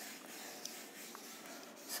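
Faint, steady rubbing of a whiteboard eraser wiping marker ink off the board.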